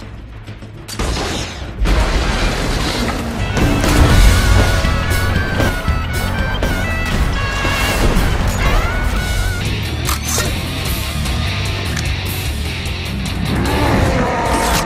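Action-movie soundtrack: a dramatic music score with booms and crashes of explosions, quieter for the first couple of seconds and loud after that.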